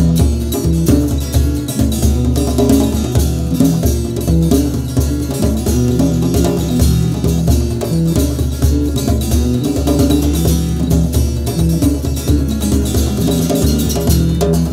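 Instrumental passage of an acoustic trio: strummed acoustic guitar, hand-played djembe and electric bass guitar, playing on steadily without vocals.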